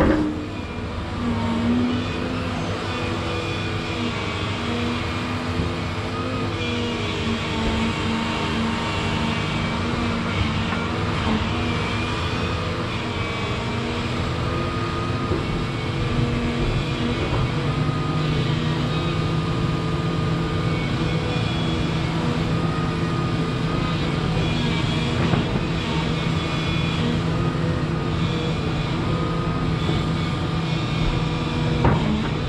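Volvo 235EL crawler excavator's diesel engine running under load as the boom and bucket dig in clay. Its steady note changes pitch about halfway through and then holds.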